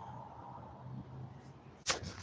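Quiet room noise, then near the end a single sharp knock from the recording phone being handled and swung.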